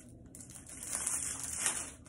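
Soft rustling with faint small clicks from a wig cap being handled and opened up, building after about half a second and fading near the end.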